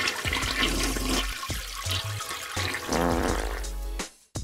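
A toilet-flush sound effect, a loud rush of swirling water, with music underneath. It stops abruptly at the end.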